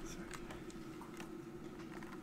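Faint scattered clicks and light handling noise from a microphone being handled and switched on, over a steady low electrical hum.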